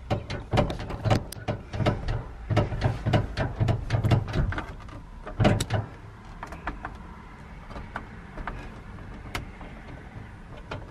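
Car door lock and latch clicking and clunking in quick succession, about three or four times a second, heard from inside the car: a locked car door being worked. After about six seconds it thins out to occasional clicks.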